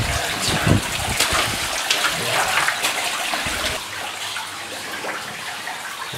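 Footsteps splashing through shallow water on a wet mine tunnel floor, a step roughly every half second to second for the first few seconds, over a steady rush of water.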